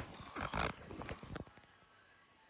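Handling noise of a phone being picked up and turned around: a scuffing rub against the microphone about half a second in, then a few light knocks.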